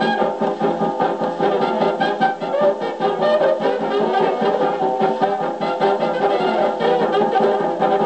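A 1933 Vocalion 78 rpm record of a jazz dance band playing on a Victor Credenza acoustic phonograph, brass to the fore. The horn-played sound is thin in the bass, with little below the low midrange.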